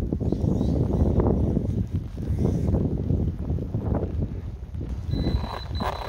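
Wind buffeting the microphone with an uneven low rumble, and soft irregular footfalls on grass. About five seconds in, a steady high-pitched beep starts, broken by brief gaps.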